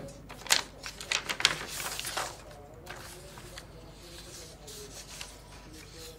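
Sheets of paper rustling and crackling as they are handled and shuffled, a quick run of crinkles in the first couple of seconds, then fainter occasional rustles.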